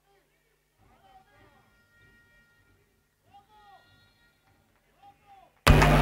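The hall sound is almost gone, with only faint distant voices, then it cuts back in abruptly near the end: loud, dense crowd and hall noise with a steady low hum under it.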